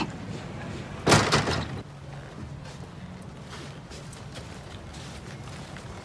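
A door slamming shut about a second in, one loud bang, over a low steady background hum.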